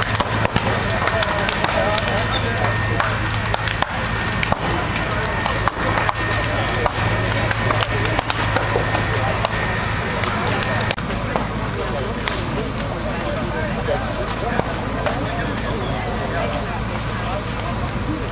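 Fire-truck engine running with a steady low hum, which shifts about eleven seconds in, with scattered sharp cracks over it.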